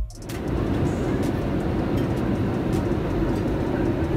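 Steady in-flight cabin noise inside a Boeing 787-8 airliner: a dense, even roar, strongest low down, that fades in just after the start, with music faint beneath it.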